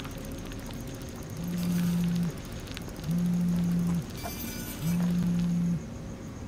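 A smartphone vibrating with an incoming call: three low buzzes of about a second each, evenly spaced.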